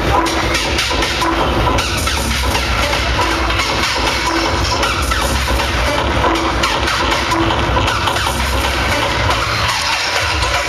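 Loud hardcore techno played by a DJ over a club sound system, with heavy, continuous bass.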